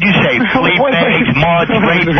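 Speech only: men talking over one another in a radio call-in argument.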